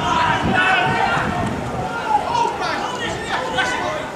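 Several men's voices shouting and chattering over one another on a football pitch, with players calling to each other and spectators talking.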